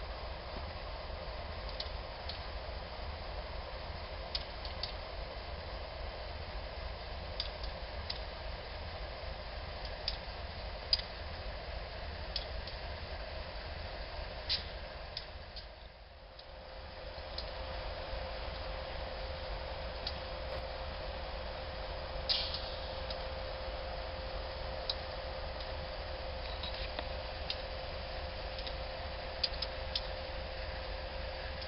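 Diesel freight locomotives: a steady low rumble with scattered light ticks. After a brief dip, a train rolls past with a faint steady whine held over the rumble.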